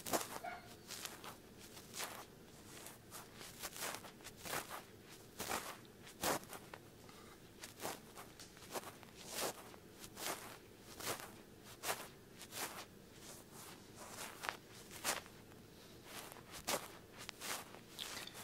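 Cotton swab scraping and brushing against the microphone in short, uneven strokes, about two a second, with gentle outward scraping motions as in cleaning wax from an ear.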